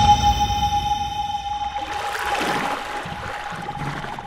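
Closing part of a TV news ident's music: a single held tone with high ringing overtones that fade, a whooshing swell about two seconds in, and the whole thing dying away near the end.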